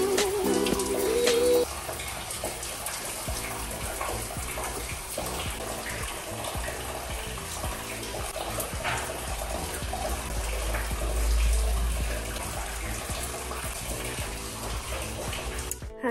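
Shower running, a steady spray of water, with background music that stops a little under two seconds in.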